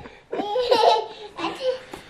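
People laughing, starting about a quarter second in after a brief pause and loudest for the next half second.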